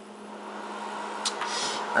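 A steady low hum with a faint click a little over a second in.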